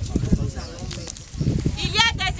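Voices of a gathered crowd, with a woman's raised, strained preaching voice starting near the end.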